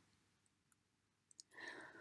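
Near silence in a pause of the narration, with a few faint clicks and a faint soft sound just before the voice resumes.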